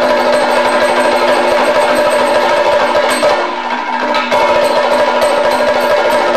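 Live drum accompaniment for Kerala classical dance: two drums played by hand in a fast, dense rhythm over steady sustained melodic tones, with a brief drop in loudness a little past halfway.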